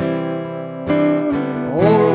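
Strummed acoustic guitar chords ringing in a slow song, with a fresh strum about a second in. A man's singing voice comes back in near the end.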